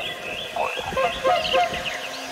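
Several small birds chirping, with many short quick calls overlapping.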